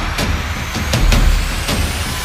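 Car engine revving hard at high rpm, with a rising whine in the second half, mixed with regular percussive hits about three a second.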